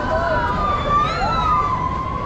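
Riders on a half-pipe swing ride screaming: several long, overlapping high screams that waver and glide in pitch. The screams sit over a steady fairground din.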